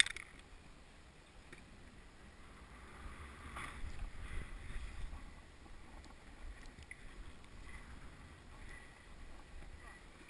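Snowboard sliding and carving over packed snow, a steady scraping hiss with a low rumble of wind on the camera, swelling about three to five seconds in.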